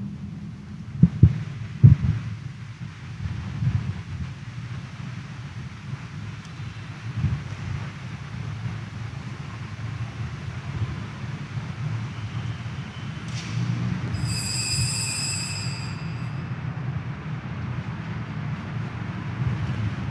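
Steady low rumble of a large church's room noise during a pause in the Mass, with a couple of sharp knocks near the start. A brief high-pitched ringing comes about fourteen seconds in.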